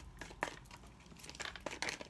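A deck of tarot cards being shuffled overhand by hand: an irregular run of soft card-on-card flicks and taps, thickest in the second half.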